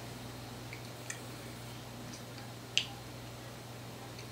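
Quiet room tone with a steady low electrical hum and a few faint small clicks, the sharpest one about three quarters of the way through.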